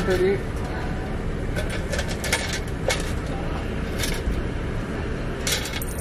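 Steady low rumble of an idling car heard from inside the cabin, with a few scattered light clicks and rustles.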